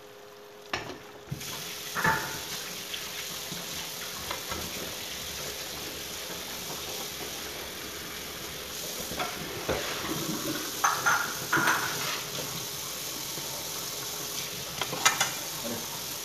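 Beaten eggs frying in a frying pan with a steady sizzle. A utensil scrapes and taps against the pan now and then, most often in the second half.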